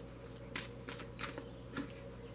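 Oracle cards being hand-shuffled: several short, crisp rustles and slaps of the cards sliding against each other.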